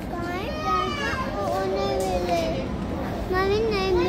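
Young children's high-pitched voices, talking and calling out without clear words, some sounds drawn out, over a steady background hum.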